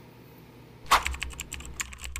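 Quiet for about a second, then a quick, irregular run of sharp clicks like keys being typed, over a low hum.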